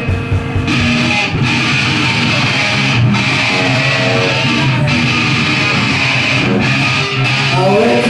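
Live rock band playing a song's instrumental opening on loud electric guitars and drums.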